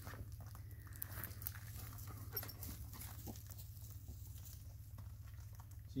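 A dog panting close by, faint, over a steady low rumble, with scattered small clicks from a plastic bag being bitten open.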